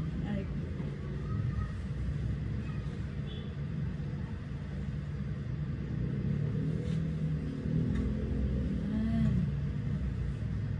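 A steady low rumble, with a faint voice briefly near the end.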